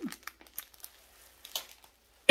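Faint crinkling of a plastic pack of party picks being handled, a few short crackles scattered through otherwise quiet room tone.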